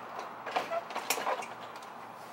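A few light clicks and knocks as a Jeep Wrangler's plastic front grille is handled and pressed against the front of the vehicle.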